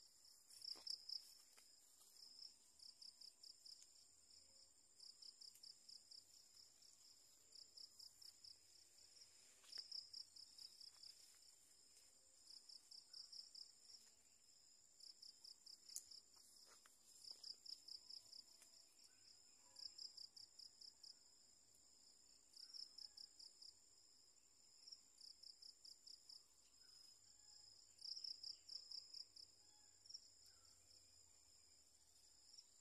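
Faint insect chirping: trains of rapid high chirps, a burst every second or two, over a steady high-pitched insect drone.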